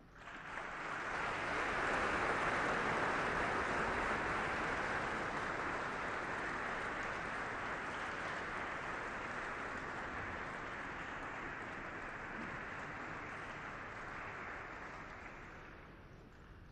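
Audience applauding. It starts suddenly, is fullest about two seconds in, and slowly dies away.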